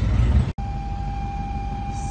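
A loud low rumble outdoors by a fuel pump cuts off abruptly about half a second in. It gives way to the steady road and engine rumble inside a moving car, with a thin steady whine above it.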